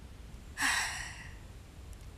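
A single breathy sigh about half a second in, fading out over about half a second, from a voice actor playing a grieving, tearful character.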